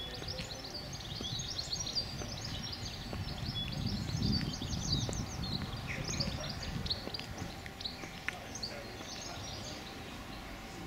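Songbirds chirping and trilling in many quick high notes, over a faint low rumble that swells a little in the middle.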